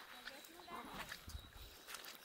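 Faint footsteps on a wet, stony riverbed: a few scattered crunches and clicks of stones underfoot, with a low rumble about halfway through.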